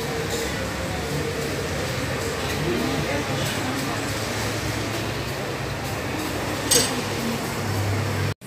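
Market crowd hubbub: an even wash of background chatter and bustle from shoppers and stallholders, with one sharp clink near the end.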